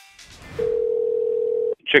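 Telephone ringback tone heard down the line as an outgoing call rings: one steady tone lasting a little over a second, cut off abruptly when the call is answered.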